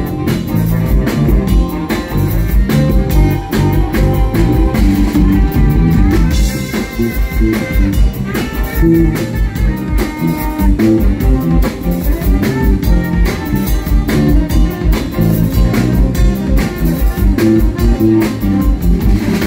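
Live blues band playing an instrumental passage: electric guitar over bass and a drum kit keeping a steady beat.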